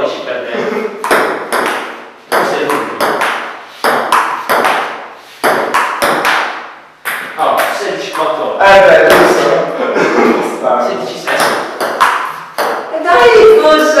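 Ping-pong ball rallying: sharp ticks of the ball striking the paddles and bouncing on the table, several a second, stopping and starting between points. Men's voices talk over it in the middle and near the end.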